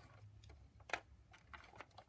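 Near silence with a few faint clicks of small plastic toy figures and accessories being handled, the clearest about a second in.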